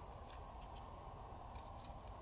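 A few faint, light clicks of small steel parts being handled in a Ruger Mark IV pistol frame as the hammer plunger and its spring are fitted, over a low steady hiss.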